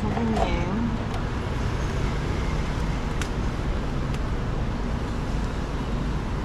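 Steady background rumble of street traffic, with a brief voice right at the start and a single sharp click about three seconds in.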